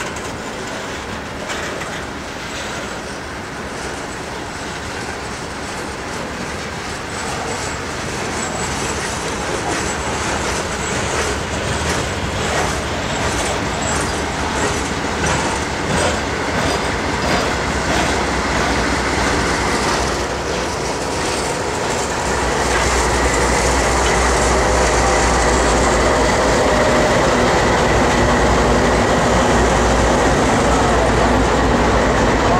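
Freight cars rolling slowly past, wheels clicking over the rail joints with some wheel squeal. Near the end the steady drone of the CSX GE AC44CW diesel locomotives grows louder as they come alongside.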